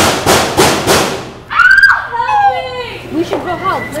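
About five loud bangs in quick succession, roughly three a second, followed by a high-pitched cry and shouting young voices.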